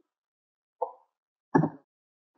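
Two brief sounds of a man's voice, under a second apart, with dead silence around them.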